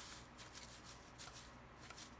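Faint rustling and a few soft ticks of a paper seed packet being tapped and shaken as small lettuce seeds trickle out into an open palm.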